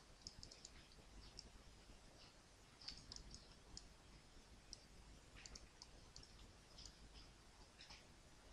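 Faint computer mouse clicks, about twenty, scattered irregularly, over a low steady hum.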